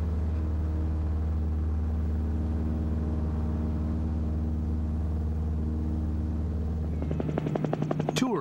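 Steady aircraft engine drone, a low even hum. About seven seconds in, a helicopter's rotor chop comes in, a fast even beating.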